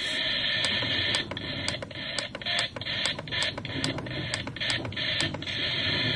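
Lalaloopsy toy alarm clock radio hissing with static on a poorly received FM station, with no music getting through. From about a second in until near the end, the static is broken by a quick, even run of clicks, about three a second.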